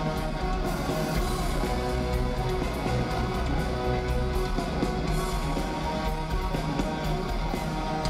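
Heavy metal band playing live in an arena, an instrumental passage of electric guitars over bass and drums with no vocals. The sound is recorded from among the audience.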